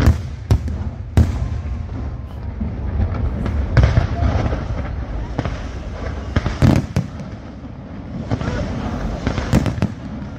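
Fireworks display: a continuous crackle and hiss from ground fountains and crackling shells, broken by sharp bangs of bursting aerial shells at irregular intervals, with a quick pair about two-thirds through and another near the end.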